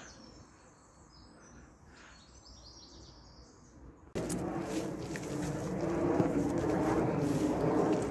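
Birds chirping faintly in the trees. About four seconds in, a much louder steady rumble of an aircraft flying overhead sets in abruptly and carries on.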